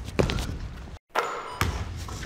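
A basketball thudding and bouncing on a hardwood gym floor, a few sharp impacts ringing out in the large hall; the sound cuts out completely for an instant about halfway through.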